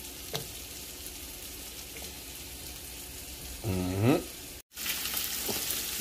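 Bacon frying in a hot nonstick skillet, a steady soft sizzle. After a brief break near five seconds the frying sizzle comes back louder and brighter.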